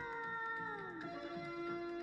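Hindi film song playing: one long held note that slides down in pitch about a second in and then holds steady at the lower pitch, over soft backing music.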